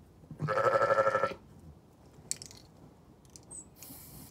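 A Zwartbles sheep bleating once, a single call lasting about a second, followed by a faint click.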